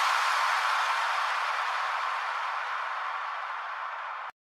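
An electronic white-noise effect at the end of an EDM-style DJ mix: a steady bass-less hiss that fades slowly.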